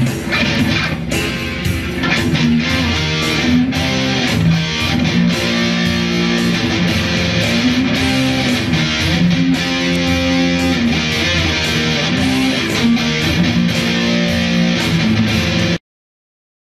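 Electric guitar playing a rock rhythm part of strummed chords and held notes, cutting off suddenly near the end.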